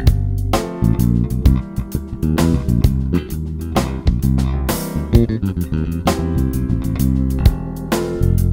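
Fender Jazz Bass electric bass playing a melodic groove over a C7 chord with a drum beat behind it. The line moves off the root onto chord tones, chromatic passing notes and blue notes.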